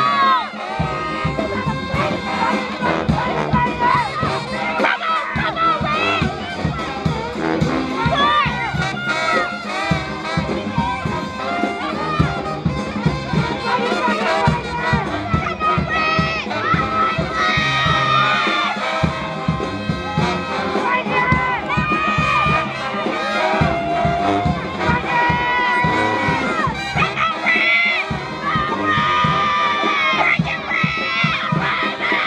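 Brass band playing with drums, mixed with crowd voices and shouts.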